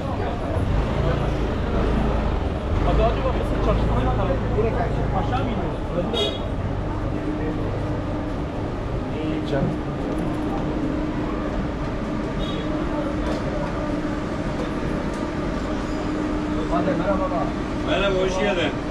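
Busy street ambience: many people talking, with a heavy vehicle's engine running close by for the first five or six seconds. After that comes a steady low hum.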